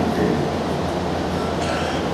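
Steady background noise with a low hum in a pause between speech.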